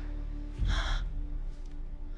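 Low, sustained trailer score drone. About half a second in, a short, sharp breath-like sound comes over a deep low hit, the loudest moment.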